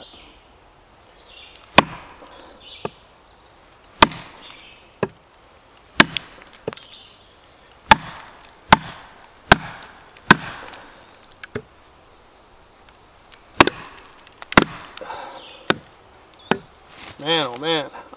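Wooden baton striking the spine of a large Kodiak bushcraft knife, about sixteen sharp knocks at roughly one a second, driving the blade down into a dry, knotty, seasoned log to split it.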